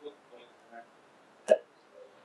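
A faint, distant voice giving a short spoken answer to a question, then a single short, sharp vocal sound about one and a half seconds in, the loudest thing heard.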